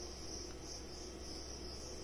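Faint, steady high-pitched insect trilling that swells and fades slightly, over a low steady hum.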